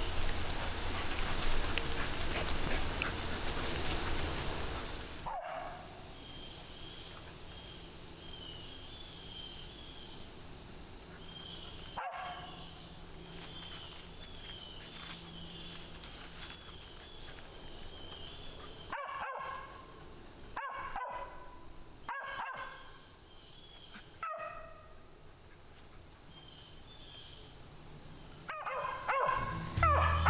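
Mountain cur barking at a tree, single barks a second or two apart, mostly in the second half: a squirrel dog treeing. A loud rustling fills the first few seconds, and a faint high chirping repeats through the middle.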